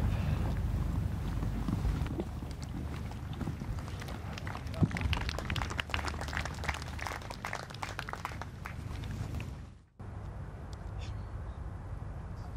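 Outdoor ambience at a golf course: low wind noise on the microphone, with scattered distant clapping and voices from spectators through the middle as the ball comes down. The sound drops out briefly near the end, then a quieter ambience follows.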